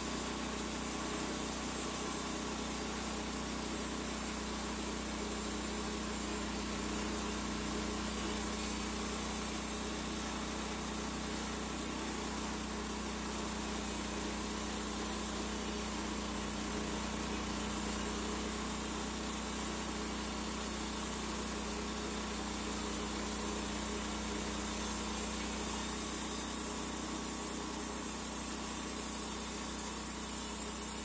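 Homemade band sawmill running steadily under load, its small gasoline engine driving the band blade as it cuts through a 36-inch live oak log, with a high hiss over the engine note.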